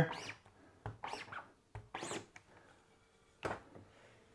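Faint scraping as a rubber squeegee is dragged across an ink-loaded screen-printing mesh, a couple of short strokes about one and two seconds in, then a sharper click near the end.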